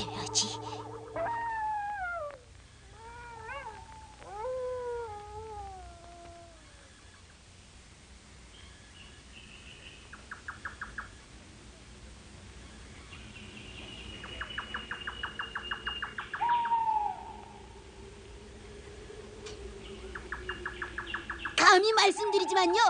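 Insects chirping in short, rapidly pulsed trains, a night ambience in an animated film's soundtrack. It opens with a few drawn-out cries that waver and fall in pitch.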